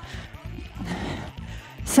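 Workout music playing under the rhythmic footfalls of someone marching in place on a bungee-sprung mini trampoline (rebounder). A voice starts up right at the end.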